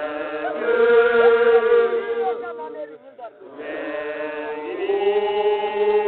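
Samburu traditional festive song: a group of voices chanting unaccompanied in long held phrases, with other voices sliding around a steady held note. The singing breaks off briefly about three seconds in, then the next phrase begins.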